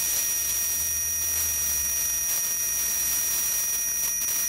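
Meiruby rechargeable plasma arc lighter held on, its electric arc giving a steady high-pitched whine over an even hiss.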